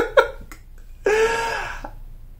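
A man laughing: two short bursts of laughter at the start, then one drawn-out, high laughing sound from about a second in.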